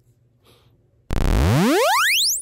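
A loud synthesized sound effect: a buzzy electronic tone sweeping steadily upward in pitch, starting suddenly about halfway through.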